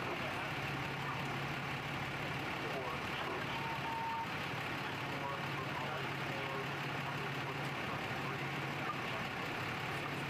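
Steady hum of idling fire department rescue vehicles, with indistinct voices of people talking.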